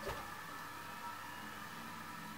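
Quiet room tone: a faint steady hiss with a faint high steady hum, and a small click at the very start.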